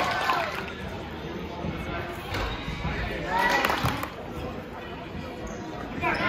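Voices of players and spectators calling out during a youth basketball game, loudest at the start and again past the middle, over the hall's background noise, with a basketball bouncing on the hardwood court.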